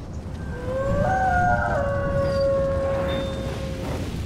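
Outro sound effect: a low rumble under a wailing tone that glides up about half a second in and then holds steady, swelling in loudness over the first second.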